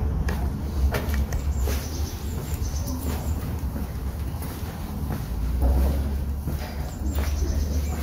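Footsteps on a paved path, with a steady low rumble of wind on the microphone throughout.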